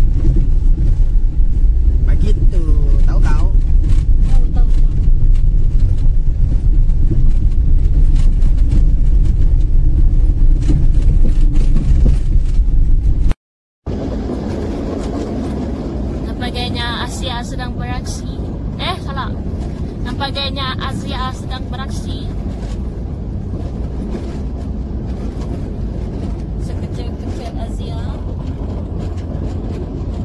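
Car driving, heard from inside the cabin as a loud, steady low rumble of engine and road noise. After a short dropout about halfway through, a quieter, steady rumble of a car on an unpaved dirt road, with voices in the background for a few seconds.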